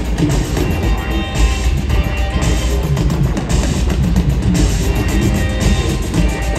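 Live band music at arena volume: an electric guitar riff over a steady drum beat and heavy bass.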